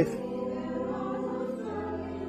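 Choir singing a long held chord as background music, with a lower note coming in near the end.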